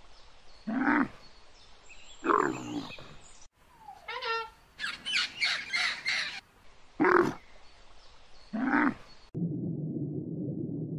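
Camels giving three deep moaning calls, followed by a blue-and-gold macaw's rapid harsh squawks and two more calls. Near the end the sound cuts to a steady low hum.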